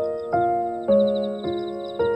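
Slow, gentle solo piano music, notes struck about twice a second and left to ring and fade, with a faint rapid high twittering above it.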